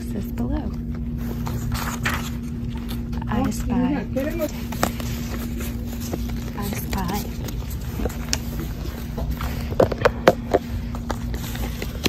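Store ambience: brief murmured voices come and go over a steady low hum, with paper rustling as book pages are flipped and a few sharp taps about ten seconds in.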